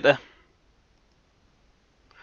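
A man's voice trails off, then near silence broken only by a few faint clicks of computer keyboard keys.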